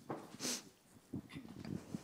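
A quiet pause in a room: a short breath noise close to the microphone about half a second in, then a few faint, low voice-like sounds.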